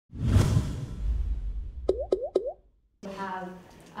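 Intro sound effect: a sudden whoosh with a deep rumble, then three quick rising pops about a quarter second apart. A voice begins speaking about three seconds in.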